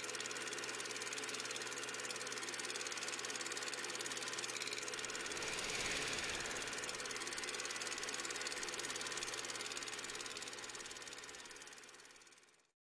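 Film projector running: a steady, fast, even clatter over a constant hum, swelling slightly about halfway through and fading out near the end.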